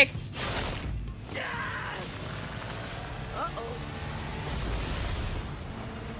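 Soundtrack of an animated fight: background music under booms and rumbling impact effects, with a sudden burst just after the start and another low rumble about five seconds in.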